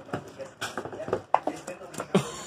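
A husky eating rice off a plate: quick clicks and knocks of teeth, spoon and plate, with a few short voice sounds among them.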